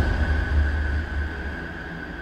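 The fading tail of a news programme's title sting: a deep low rumble with a single thin high tone held above it, dying away.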